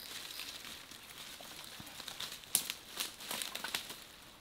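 Dry bamboo leaf litter rustling and crackling as a person moves through it, with a run of sharp crackles in the second half.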